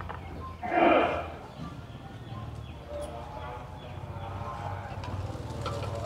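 Indistinct voices over a steady low hum, with one louder voice-like call about a second in.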